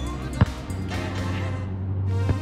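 Background music, with one sharp slap about half a second in: a hand striking a volleyball on a serve.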